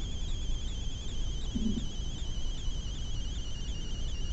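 A steady high-pitched electronic whine with a fast, regular warble, over a low hum.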